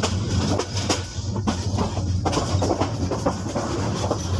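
Dubbed-in train sound effect: a train running on rails, a steady low rumble with irregular clicks of wheels over the rail joints.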